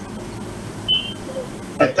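Steady background hum and hiss on a remote live broadcast link while it waits for the reporter to answer, with a short high beep about a second in. A man's voice begins near the end.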